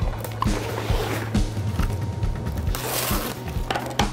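Plastic cling wrap crinkling as a sheet is pulled from the roll in its box and torn off, with a louder tearing rasp about three seconds in, over background music.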